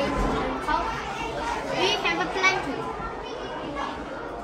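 Indistinct chatter of children's voices, several overlapping, with no clear words.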